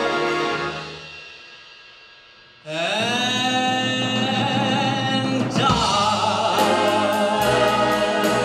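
Live big band with a male swing singer: a held chord dies away over the first two seconds, then the band and the voice come back in together about two and a half seconds in on a long sustained note, with brass behind it. Near the end a steady cymbal beat starts up.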